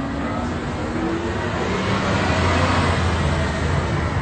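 Street traffic noise: a passing vehicle's engine and tyre rumble swells toward the middle and eases near the end.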